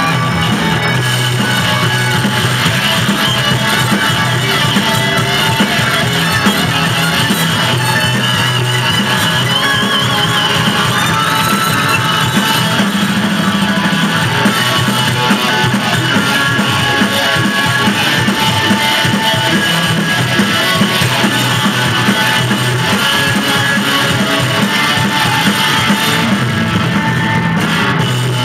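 Live rock band playing an instrumental passage, loud and steady: electric guitars over a drum kit, with a lead guitar line that bends and wavers partway through.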